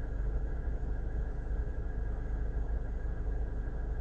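Steady low rumble with a faint hiss, unchanging throughout.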